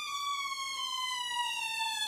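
Cartoon sound effect: one long, whistle-like tone that glides slowly and steadily down in pitch.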